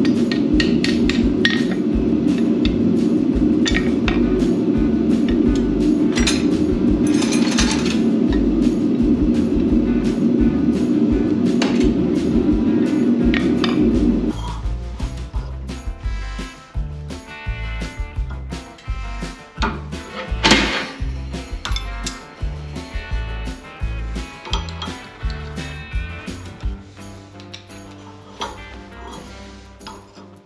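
Hand hammer striking red-hot steel on an anvil in repeated blows over a steady loud roar. About 14 seconds in the roar stops abruptly, and sharp metallic clinks over background music follow, with one heavy strike about 20 seconds in as the hot piece is stamped with a maker's mark.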